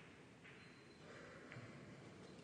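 Near silence: quiet hall room tone after a pool shot, with one faint click of pool balls about one and a half seconds in.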